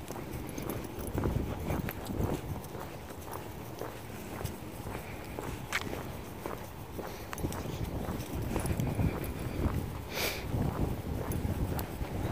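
Footsteps walking on an asphalt path, a steady run of soft thumps with scattered light clicks, and a short rustle about ten seconds in.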